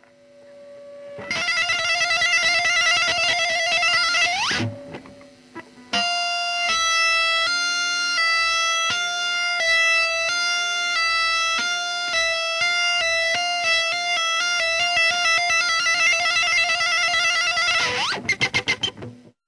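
Electric guitar played solo. A held note with vibrato sweeps sharply upward, then a run of quick separate notes gets faster and denser toward the end.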